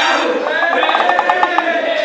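A few voices cheering in one long held shout, with a fast fluttering stretch in the middle.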